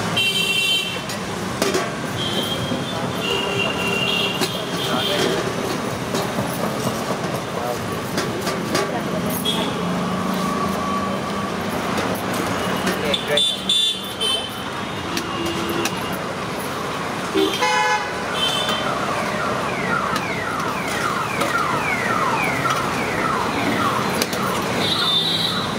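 Busy street ambience: background voices and passing traffic, with short car horn toots now and then.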